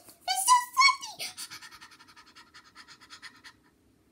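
A child's voice exclaims, then about a second in breaks into quick breathy panting, about six or seven breaths a second, that fades away, as if from a mouthful of something too spicy.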